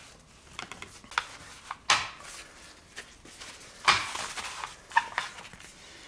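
Paper shop towel rubbing and scrubbing over a plastic ride-on toy body panel in irregular strokes, wiping off sticker glue residue with solvent, with a few light knocks and scrapes as the plastic panels are handled on a steel workbench; loudest about two and four seconds in.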